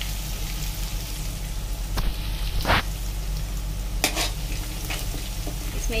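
Crushed ginger and garlic sizzling in hot oil in a kadai, with a steel ladle stirring them and scraping the pan a few times. The loudest scrape comes a little under three seconds in.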